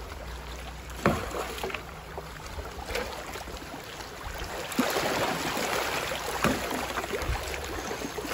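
River water rushing around a bamboo raft as it is poled downstream, growing louder about five seconds in, with a few short knocks.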